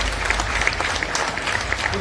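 Audience applauding, a dense patter of many hands clapping over a low steady hum.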